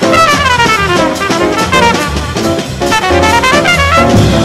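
Trumpet soloing in fast, rising and falling runs over walking upright bass and drum kit: a hard-bop jazz quintet playing live.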